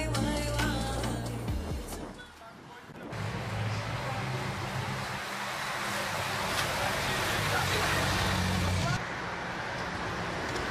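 Background music fading out over the first two seconds, then the live sound of a bike race passing on a street: a steady rushing noise with the low hum of a motor vehicle's engine, which stops about nine seconds in.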